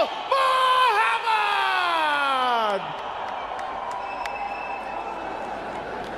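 A ring announcer's long, drawn-out call of a fighter's name over the arena PA, the voice sliding down in pitch and ending about three seconds in. After that the crowd's cheering carries on as a steady noise.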